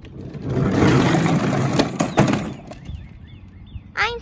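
Little Tikes Cozy Coupe toy car's hard plastic wheels rolling over asphalt: a rough rumbling scrape for about two seconds with a few clicks, then fading out.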